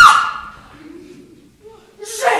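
A performer's voice gives one high-pitched exclamation at the very start that fades out within half a second. A quiet pause on stage follows.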